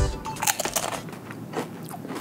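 Crunching and chewing of a ridged Calbee Pizza Potato chip, with sharp crisp crunches in the first second that soften into quieter chewing.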